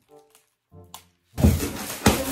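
Large roll of clear plastic film being pulled and stretched off the roll, a loud crackling rustle that starts suddenly after about a second of near quiet.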